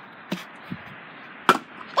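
Plastic water bottle tossed in a bottle flip and knocking down on a hard surface: a light knock about a third of a second in, then a sharper, louder knock about a second and a half in.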